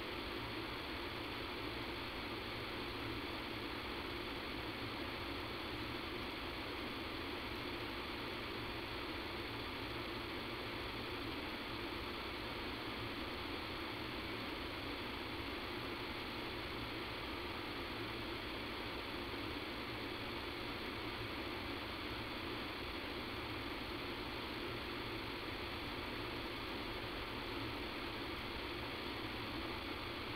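Steady, unchanging hiss and low hum of line noise on a poor-quality phone conference-call recording.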